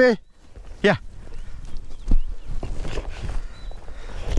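Footsteps on a dirt track: an irregular run of soft thuds and knocks, with a short shouted call just before one second in.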